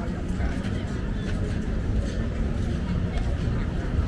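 Street-market ambience: scattered voices of shoppers and vendors talking over a steady low rumble.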